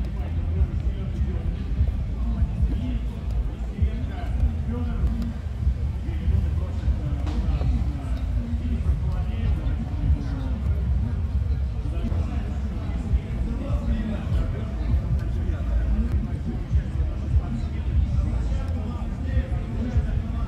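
Indistinct background voices over a steady low rumble, with short sharp taps every second or two from wooden chess pieces set down on the board and the chess clock pressed during a fast blitz game.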